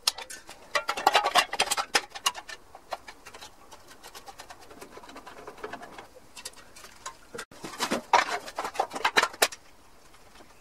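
Rapid metallic clicks and rattles of hand tools working on an air-cooled VW Beetle engine's painted sheet-metal tinware, in two dense bursts: one about a second in and another near eight seconds.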